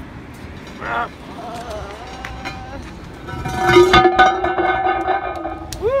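A child's voice held on one steady strained note for about two seconds, with a few knocks near its start, as a heavy storm drain cover is heaved up. It ends in a rising laugh near the end.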